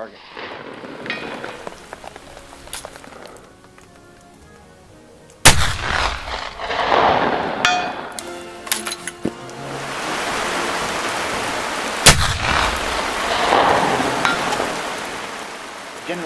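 Two shots from a Martini-Henry Mk I rifle firing black-powder .577/450 cartridges, about six and a half seconds apart. Each sharp report is followed by a long echo that rolls away over a couple of seconds.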